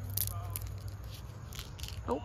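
Brief crackles and rustles of leaves and dry bean vines being handled close to the microphone, over a steady low hum.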